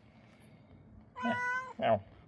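Domestic tabby cat meowing twice in the second half: a longer, steady-pitched meow, then a short one just before the end.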